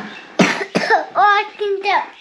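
A small child coughs about half a second in, then a high-pitched child's voice follows. The cough is typical of a mouthful of rice catching in the throat.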